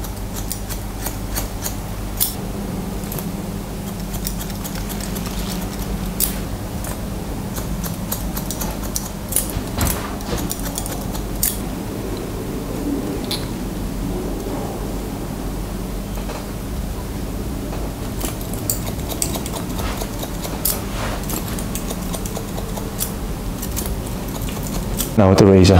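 Scissors snipping through hair in short, irregular clicks, over a steady low hum.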